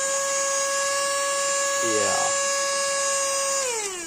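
Small cordless handheld vacuum cleaner's motor running at full speed with a steady, dental-drill-like high whine, its narrow crevice nozzle and brush fitted. Near the end it is switched off and the whine falls away in pitch.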